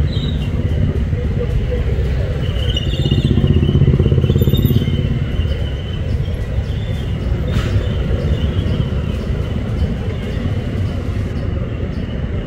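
Vehicle engine running with a steady low rumble amid street traffic, a little louder a few seconds in, with indistinct voices in the background.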